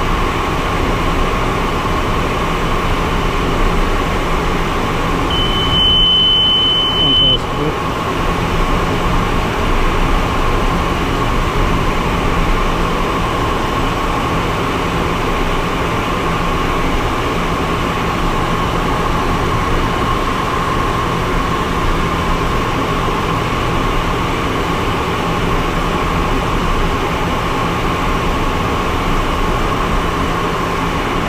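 Steady cabin noise of a small aircraft in flight: engine and airflow noise with a constant hum. About five seconds in, a single high steady cockpit tone sounds for about two seconds.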